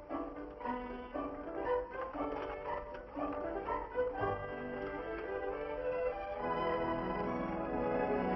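Orchestral film score led by violins and strings, growing fuller and a little louder about six and a half seconds in.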